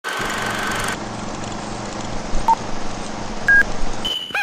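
Steady hiss with a low hum and a high held tone for the first second, then two short electronic beeps about a second apart, the second higher in pitch.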